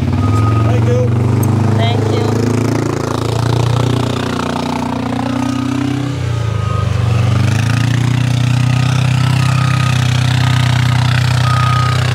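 Side-by-side utility vehicle's engine running close by, its pitch dipping and then rising again about midway as it pulls away, with a short high beep now and then.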